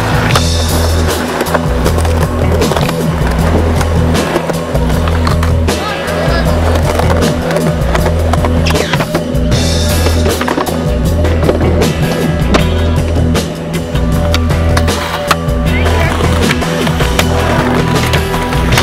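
Skateboarding on concrete mixed with backing music: wheels rolling and the board clacking on tricks, with many sharp knocks over a steady bass line.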